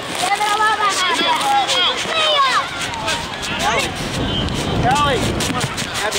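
Several high-pitched voices shouting and calling out at once, overlapping, with no clear words.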